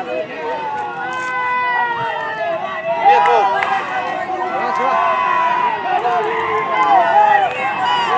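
People's voices calling and shouting without a break during a two-horse race on a dirt track, growing steadily louder as the horses near the finish.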